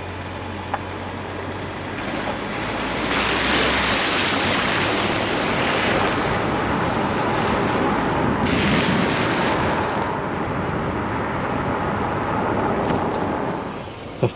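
A car driving along a wet road: a steady rush of tyre and road noise with the hiss of water under the tyres. It grows louder from about three seconds in and eases off again around ten seconds in.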